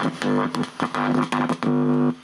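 A boombox speaker giving out a loud amplified buzz in short on-off spells as a fingertip touches and leaves the amplifier's input wires. This is hum pickup, used to find which wire feeds which channel.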